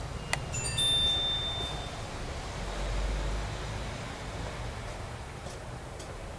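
A click, then several clear, high chime-like metallic tones ring out together about half a second in and fade within about a second and a half. A low rumble follows near the middle.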